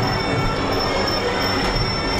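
Traditional Muay Thai sarama fight music playing steadily, led by the held, reedy tones of the pi java oboe.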